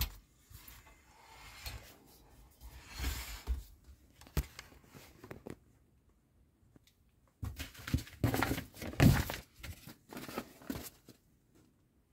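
Soft knocks, clicks and rustles of a plastic scale-model car chassis being handled and shifted on a table, loudest about eight to nine seconds in.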